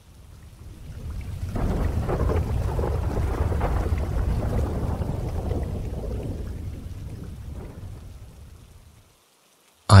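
Rolling thunder with rain, a low rumble that swells up over the first two seconds and slowly dies away by about nine seconds in.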